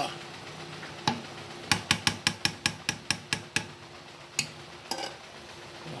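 Metal spoon knocking and clinking against the side of a stainless steel pot of mung bean stew while stirring: a single knock, then a quick run of about ten knocks, then two more.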